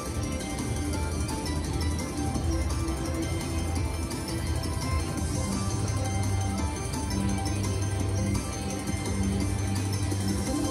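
Ultimate Fire Link China Street slot machine playing its steady win celebration music as the win meter counts up the payout.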